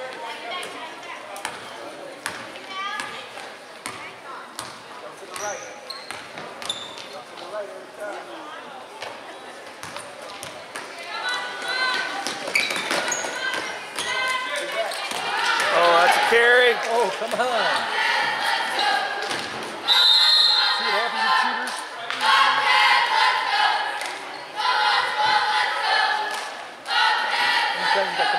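A basketball bouncing on a hardwood gym floor during play, with short high squeaks. From about halfway through, spectators' voices shouting grow louder over the play.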